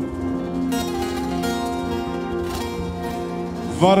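Turkish folk ensemble playing a short instrumental passage led by plucked strings, with held notes underneath. A male voice comes back in singing just before the end.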